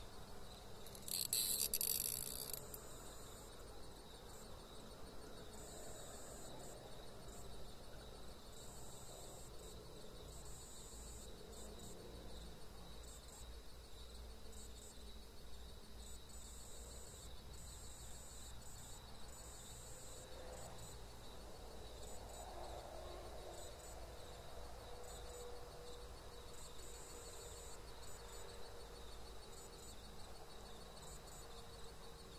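Faint night insects, crickets, trilling high in intermittent runs, with one louder high buzz lasting about a second and a half, a second in.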